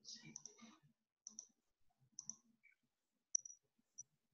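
Near silence broken by a few faint, sharp computer mouse clicks spread a second or so apart, the last one the loudest.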